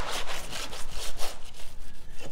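Metal painting trowel scraping and dragging paint across a stretched canvas in a quick series of short scrapes, several a second.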